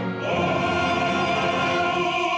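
Operatic bass voice singing. About a third of a second in it moves onto a long held note with a clear vibrato.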